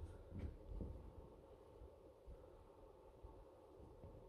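Near silence: the room tone of a large hall with a low steady hum, and a few soft low thumps in the first second.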